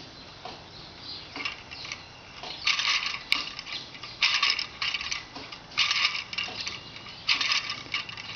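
Wire parts of a hand-operated kinetic wire sculpture being set moving by a finger, striking one another with rattling, ticking clicks. The rattles come in four short bursts about a second and a half apart.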